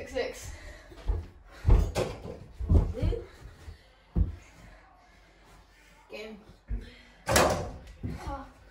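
Irregular thumps and knocks of a mini basketball game: a small ball bouncing on carpet and striking an over-the-door mini hoop, rattling the door it hangs on, with the loudest knock near the end.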